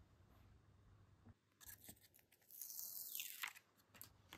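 A Panini sticker being peeled off its paper backing: a soft tearing hiss lasting about two seconds, starting a little over a second in.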